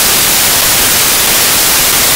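Loud, steady white-noise hiss like TV static, covering everything with no speech or music audible through it.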